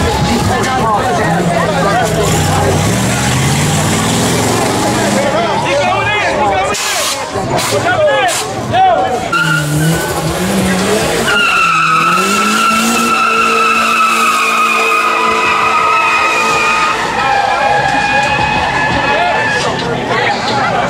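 A car engine revving under crowd voices, then, from about eleven seconds in, a long tire squeal: a steady high screech that slowly falls in pitch for some eight seconds as a car does a burnout.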